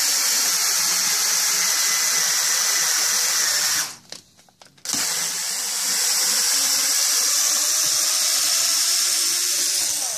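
Cordless power screwdriver running a screw into the pilot hole in a wooden shotgun stock's butt, setting the threads. It runs steadily with a high whine, stops about four seconds in for about a second, then runs again.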